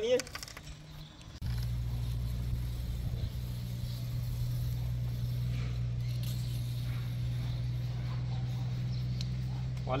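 A steady low hum sets in abruptly about a second and a half in and holds evenly.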